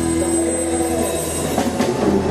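Live band music with a long held chord, its notes ringing steadily and no drum beat under it. A few short percussive hits come near the end.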